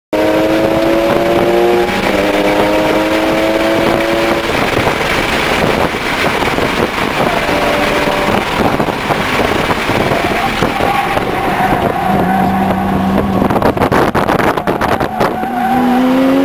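Mitsubishi Lancer Evolution IX's turbocharged four-cylinder engine heard from inside the cabin at speed, rising in pitch as it accelerates through the gears, with a shift about two seconds in and another near four and a half seconds. After that come road and tyre noise with the engine holding steadier notes through the corners, and a rapid run of knocks near the end.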